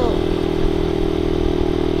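Buccaneer 125 motorcycle engine running with a steady hum while the bike is ridden at an even speed, over a haze of road and wind noise.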